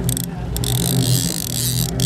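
Boat engine running steadily, with wind rushing on the microphone and the wash of water.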